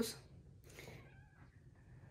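Faint, brief high squeak from a newborn baby, one of the small noises she makes while lying in her crib.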